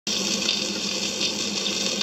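Steady surface hiss of a stylus running in the groove of a spinning shellac 78 rpm record, with no music yet.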